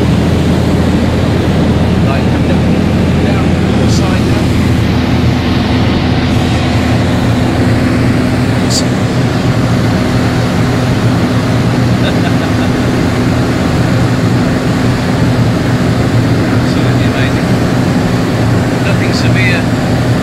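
Piston aero engines and propellers droning steadily in flight, heard from inside a light trainer's cockpit, with the rush of airflow. The engine hum holds an even pitch, with a few faint clicks.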